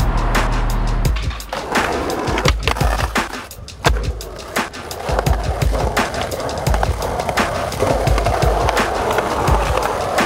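Skateboard on concrete: wheels rolling, with repeated sharp clacks of tail pops and landings, mixed under backing music.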